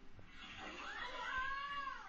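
One long meow-like call that rises at first, holds steady for about a second and drops away at the end.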